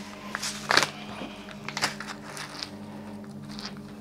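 Low, steady background music drone with a few faint clicks and rustles.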